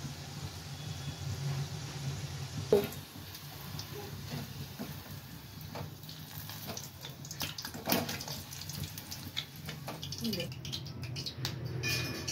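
Pakoras deep-frying in a kadhai of hot oil with a steady sizzle. A wire-mesh strainer clinks and scrapes against the pan as the pakoras are scooped out and shaken to drain. There is a sharp knock about three seconds in, and the clinks come thicker near the end.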